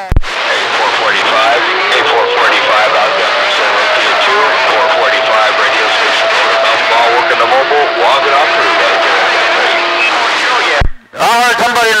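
CB radio receiving a weak long-distance skip (DX) transmission: a voice buried in heavy static, with whistles and steady tones from other stations, so garbled that the call numbers can't be copied — "rough and tough". A short thump marks the signal coming in near the start and dropping out about eleven seconds in.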